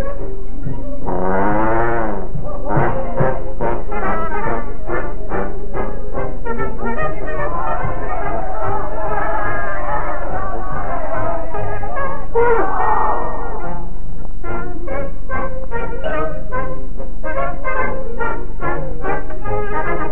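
Dance band playing, led by a trombone: a wavering, sliding phrase about a second in, then a run of short, clipped notes.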